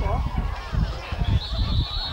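A referee's whistle blows one long, steady, high note starting a little past halfway, over a low rumble, with a shout near the start.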